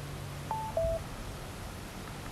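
Anker portable Bluetooth speaker sounding its two-note prompt tone as its top button is held: a short higher beep followed straight away by a lower one, about half a second in.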